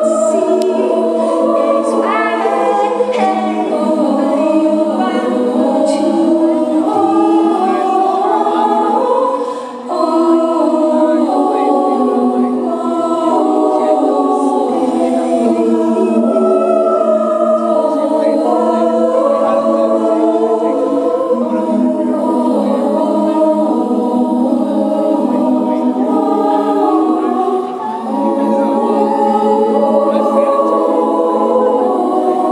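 Women's choir singing sustained chords in close harmony that shift in slow steps, with short breaks about ten seconds in and again near the end.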